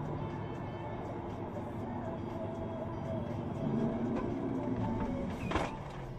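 Heavy truck cab noise while driving, under background music, with one brief sharp noise about five and a half seconds in.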